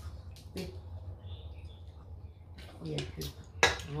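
Crab-leg shells being twisted and snapped apart by hand, giving a few sharp cracks with pauses between, the sharpest near the end. A steady low hum runs underneath.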